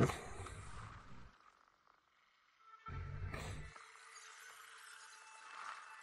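Action sound effects from an animated episode: a low rumble fades out, then after a brief silence a second short rumbling hit lands about three seconds in, followed by a faint steady tone.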